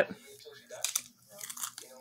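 Biting into and chewing a barbecue potato chip: a few crisp crunches starting about a second in, with a second cluster half a second later.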